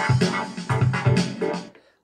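Yamaha PSR-520 keyboard playing its built-in demo song: electronic backing with a steady drum beat and pitched synth notes, stopping shortly before the end.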